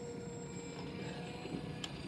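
Faint, steady whine of the Easy Trainer 800 model glider's small brushless motor and two-blade propeller in flight, with a low wind rumble on the microphone.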